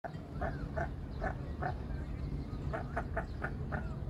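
A series of about ten short animal calls, a few with a bending pitch, bunched faster in the second half, over a steady low rumble.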